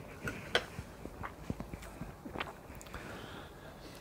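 A man chewing a bite of soft gingerbread cake, with faint, scattered mouth clicks.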